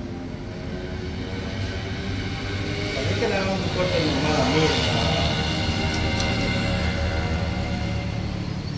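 A motor hums steadily with several evenly pitched overtones, growing louder about three seconds in, with faint voices underneath.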